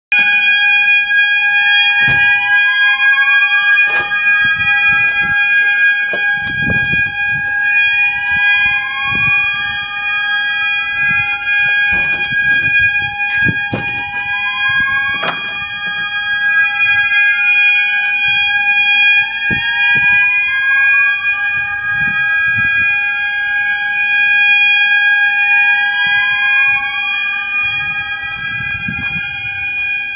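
Building fire alarm sounding: a steady high-pitched tone held throughout, overlaid by a siren-like sweep that rises in pitch again and again. Scattered knocks and thumps sound over the alarm.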